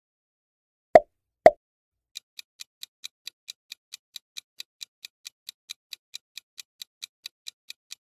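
Two sharp pop sound effects about half a second apart, then a quiz countdown timer's sound effect ticking fast and evenly, about four to five ticks a second, from about two seconds in.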